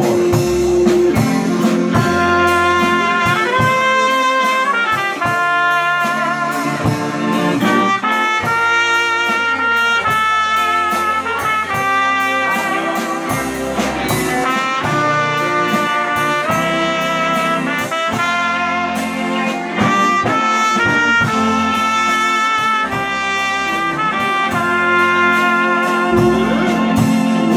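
Live band music with a trumpet playing a melody solo over a drum kit and electric guitar.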